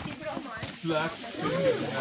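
Bacon and hash browns frying on a gas barbecue hotplate: a steady sizzle, with faint voices in the background.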